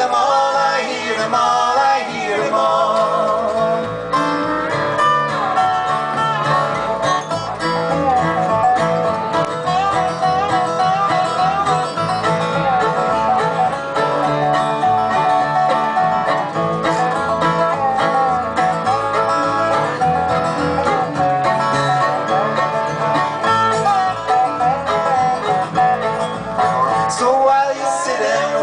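Acoustic string band playing an instrumental break of a folk song: fiddle and dobro carry a sliding, wavering melody over strummed acoustic guitar and plucked upright bass.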